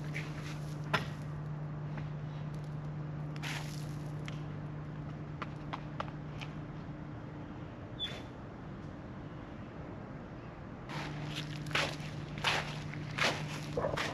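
Footsteps on pine-needle-covered ground, soft and scattered at first, then louder and closer together near the end as the walker comes up to the microphone. A steady low hum sits underneath throughout.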